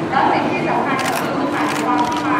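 Camera shutters clicking a few times, about a second in and again near the end, over people's voices.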